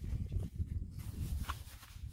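Low, irregular rumbling and thudding on the microphone: handling and movement noise from someone moving about outdoors.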